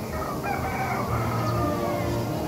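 A rooster crowing once, one long call of about a second that falls slightly in pitch near its end.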